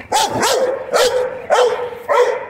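A dog barking repeatedly, about four loud barks in quick succession.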